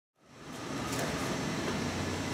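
Steady room noise: an even hiss that fades in from silence over the first half second and then holds.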